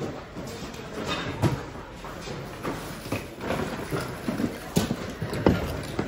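Irregular knocks and clatter of mixed second-hand goods being handled and shifted in a large plastic bin, the strongest knocks about a second and a half in and near the end.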